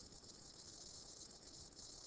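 Near silence: faint steady hiss of room tone and microphone noise.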